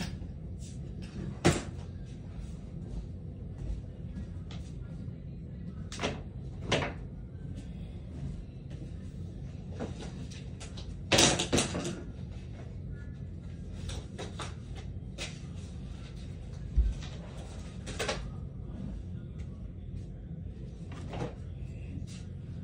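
Scattered knocks, clatters and rustles of a bedroom being tidied by hand, as clothes are picked up and things moved about. A louder cluster of clatters comes about halfway through.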